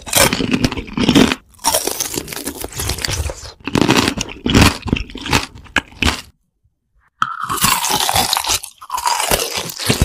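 Crunchy chewing and biting of a brittle food right at the microphone, in dense irregular bursts of crunches. The sound drops out completely for about a second a little past halfway, then the crunching resumes.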